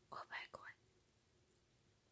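A few soft whispered breaths of a person's voice in the first second, then near silence.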